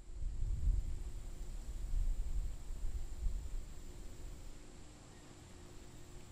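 Wind buffeting the microphone outdoors: an uneven low rumble, strongest in the first few seconds and easing off later, over a faint steady high tone.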